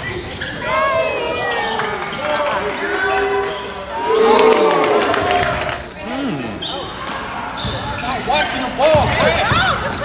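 Live basketball play in a gym: a basketball bouncing on the hardwood floor and sneakers squeaking, with players' and spectators' voices calling out. The squeaks come thickest near the end.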